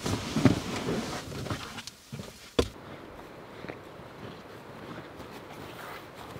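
A man getting out of a car: rustling movement, then a car door shut with a single sharp knock about two and a half seconds in, followed by faint steady background hiss.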